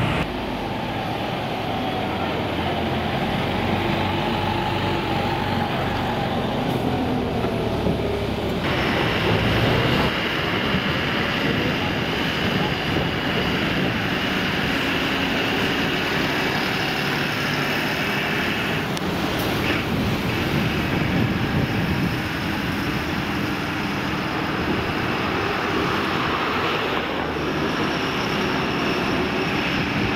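Heavy flatbed lorry's diesel engine running steadily as the truck drives off under load. The sound shifts abruptly about nine seconds in.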